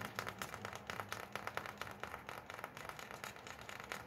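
Fingers picking at the paper label and tie ribbon on a new pair of socks: an irregular run of small crinkles and clicks.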